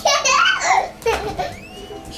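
Toddler's high-pitched squealing laughter, loudest in the first second, then a shorter burst of laughing.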